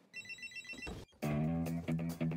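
A rapid trill of short electronic beeps, like a phone ringtone, for under a second, then music starts about a second in with steady low bass notes.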